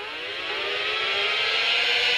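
Opening of the next track on a Raspberry Pi Volumio network player, just after it skips forward: a rising synth sweep over a swelling hiss that grows steadily louder.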